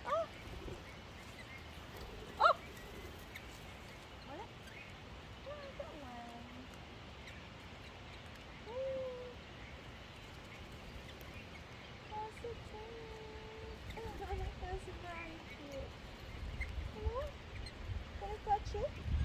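Wild parrots calling in short, scattered calls, with one sharp, loud call about two and a half seconds in, over faint background voices; a low rumble comes in near the end.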